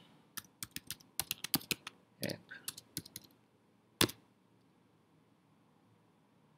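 Typing on a computer keyboard: a quick run of keystrokes over the first three seconds or so, then a single louder keystroke about four seconds in.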